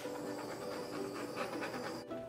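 Butane kitchen blowtorch hissing steadily as it is passed over wet pour paint to pop air bubbles, with soft background music underneath.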